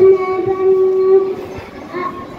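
A young girl singing into a microphone, holding one long steady note for over a second before it fades, then starting the next note near the end.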